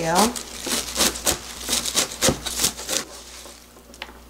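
Chef's knife cutting through a bunch of dallae (Korean wild chives) on a plastic cutting board: a quick, uneven run of knife strokes that stops about three seconds in.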